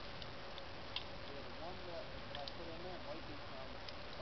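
A few light clicks of cartridges being pressed into a pistol magazine, heard under a faint low voice and steady outdoor background hiss.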